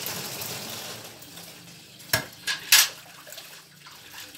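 Water sloshing and splashing in a metal bucket, with three sharp knocks and splashes about two to three seconds in as the bucket and its handle are handled.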